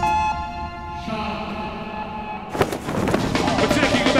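Music with a held chord that fades over the first second, then, about two and a half seconds in, a live crowd cheering and clapping.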